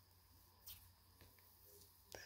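Near silence: a faint low hum, with one brief soft sound less than a second in.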